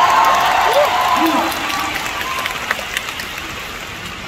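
Live concert audience applauding and cheering, with a few voices calling out, loudest at first and dying down after about two seconds.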